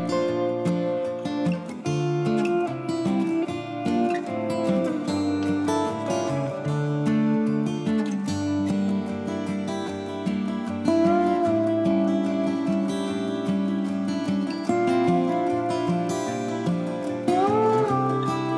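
Background music led by a strummed acoustic guitar.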